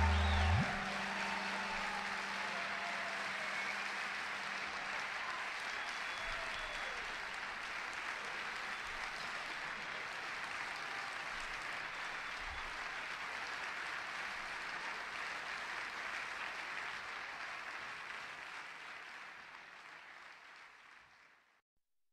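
A concert audience applauding steadily after a piece, the clapping fading out near the end. In the first second the last low tabla note dies away with a rising pitch glide.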